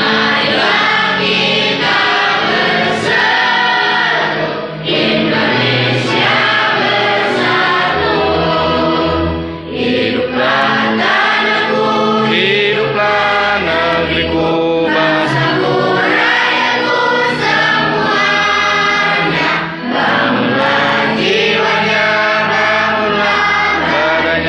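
A group of boys and girls singing a song together in unison, with an instrumental accompaniment carrying a steady bass line.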